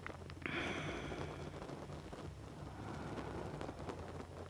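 A slow, soft breath out, starting about half a second in and fading over a second or so, over a faint low steady hum.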